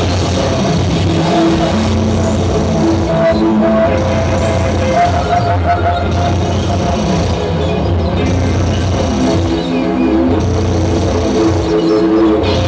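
Live electronic music played on a tabletop rig of electronic instruments: held synthetic notes that change pitch every second or so over a low bass tone that drops in and out, with wavering, gliding pitches about two-thirds of the way through.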